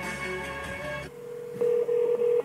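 Music playing through the car's speakers cuts off suddenly about a second in. A steady telephone ringback tone follows as the iPhone's outgoing call rings through the car audio.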